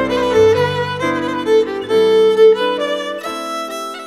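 Fiddle playing a lively folk dance tune over piano accompaniment, with bass notes held under the melody that drop out briefly near the end.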